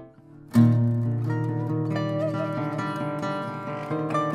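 Plucked string instruments playing together. After a brief dip, a loud plucked attack comes about half a second in and opens a passage of sustained low notes under a melody that slides and wavers in pitch.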